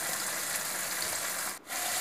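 Spice paste sizzling in hot oil in a non-stick pan, with a spatula rubbing and scraping through it; the sound drops out briefly about one and a half seconds in.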